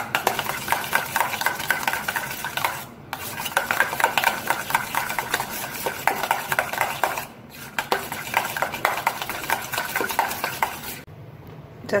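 A spoon beating malai (milk cream) fast and without stopping in a stainless steel bowl: a quick, continuous rattle of metal scraping and clicking against the bowl's sides, churning the cream into butter. It breaks off briefly twice and goes quieter about a second before the end.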